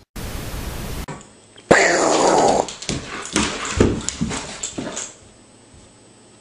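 A burst of hiss lasting about a second, then a dog vocalizing for about three seconds: a call that falls in pitch, followed by several shorter bursts.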